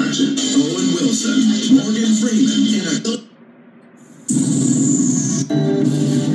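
Old film and TV audio playing from a computer and picked up off its speaker: voices over music, a break of about a second near the middle, then music with held notes starting again.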